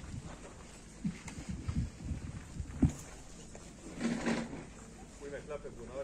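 A quiet pause with a few soft low thumps in the first three seconds, then faint voices talking quietly, about four seconds in and again near the end.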